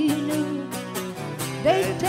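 Live acoustic song: an acoustic guitar strummed steadily, with a singing voice holding a note at the start and coming back in with a new line near the end.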